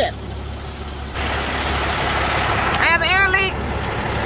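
Truck engine idling with a steady low hum; about a second in, a steady hiss of compressed air starts, escaping from a leaking connection on the lift axle air line.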